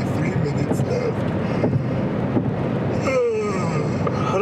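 Steady road and engine noise inside a moving car, with a man's voice briefly near the start and again near the end.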